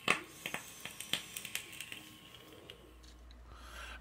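A sharp click, then a string of lighter clicks and knocks from a vape mod and camera being handled. Near the end comes a soft, rising breath as vapor is exhaled.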